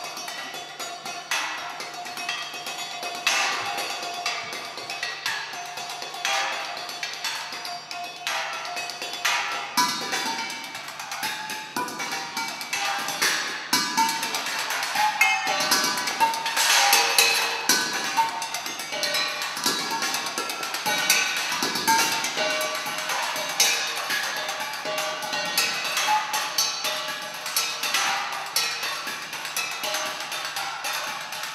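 Solo percussion improvisation: a dense run of quick, irregular strikes on small pitched and unpitched percussion instruments, getting busier and louder a little past halfway.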